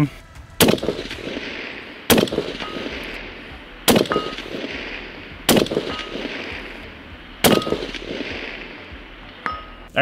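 Five shots from a bolt-action precision rifle with a muzzle brake, spaced about a second and a half to two seconds apart, each followed by a short faint metallic ring as a bullet strikes the steel target plate.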